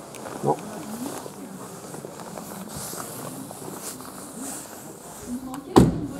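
Low rustling and shuffling, then near the end a single loud thud: a Renault ZOE's door being shut.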